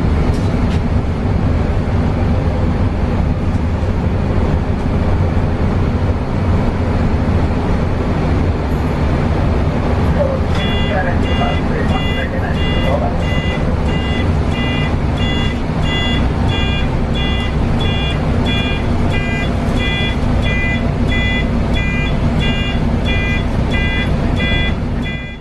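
Mercedes-Benz O405NH bus's rear engine running with a steady low drone as the bus drives slowly along the interchange. About ten seconds in, a repeating electronic beep starts, about two a second, and keeps going.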